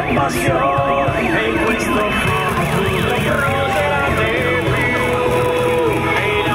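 A fire-engine siren sweeping quickly up and down over loud music, both played from the fire-engine float's loudspeakers; the siren fades out after about three and a half seconds and the music carries on.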